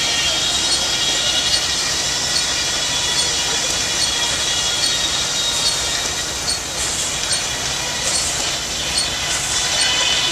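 Steady running of old show machinery, with a high metallic squeal and light ticks repeating somewhat more than once a second.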